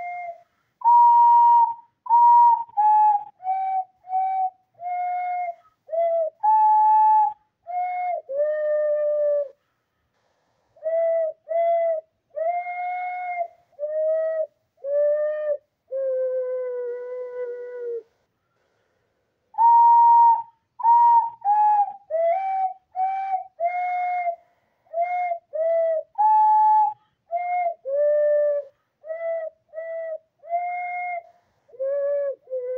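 A person whistling a slow melody by mouth in separate, mostly short notes. It pauses briefly twice, and a longer note slides slightly downward just before the second pause.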